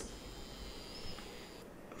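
Quiet room tone: a faint steady hiss with a faint high whine.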